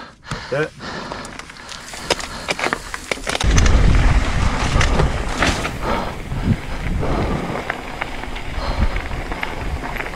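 Mountain bike rolling out of a dirt trail and onto gravel, tyres crunching and the bike clicking and rattling over the bumps. A low rumble comes in about three and a half seconds in and stays.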